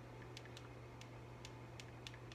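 Faint, irregular taps of typing on a phone's touchscreen keyboard, about five clicks over two seconds, over a low steady hum.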